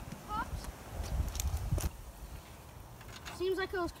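Wind rumbling on the microphone, swelling about a second in, with a few sharp knocks. A brief high call comes just after the start, and a child's high-pitched voice speaks near the end.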